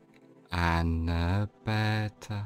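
A man's deep voice speaking slowly in a drawn-out, chant-like way: one word held for about a second, then two shorter ones, over faint steady ambient music.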